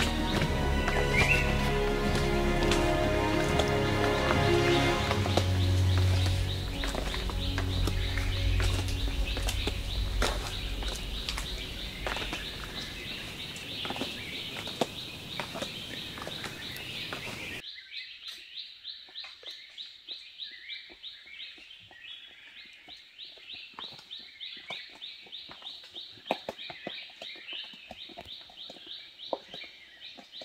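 Background music with birds chirping over it; the music cuts off abruptly a little over halfway through. After that, only the birds remain: a rapid, evenly repeated high chirping with scattered light clicks.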